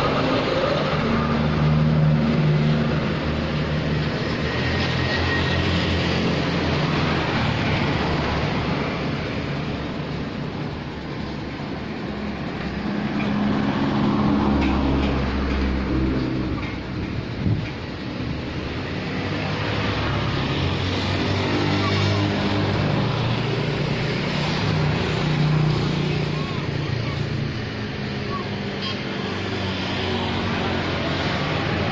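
Street traffic: motor vehicle engines passing and running close by, swelling and fading with pitch that shifts up and down.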